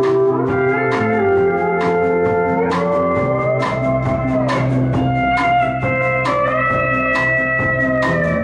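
A live country-rock band plays an instrumental break between vocal lines: a steady drum beat, strummed acoustic guitar and electric bass under a held lead melody whose notes bend and slide in pitch.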